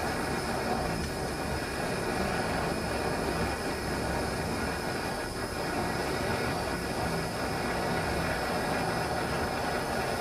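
Hand-held propane torch burning steadily with an even hiss, its flame held on an aluminum joint to heat it for brazing with aluminum rod.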